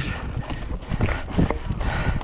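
Full-suspension mountain bike rolling over a loose, stony trail: tyres crunching on the rocks and the bike knocking and rattling at uneven intervals, over a low rumble of wind on the microphone.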